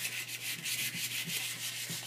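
180-grit sandpaper rubbed quickly back and forth around a small metal motor shaft, a light, steady scratching of short repeated strokes. The shaft is being sanded down evenly so that the drive wheel's hole will slide onto it.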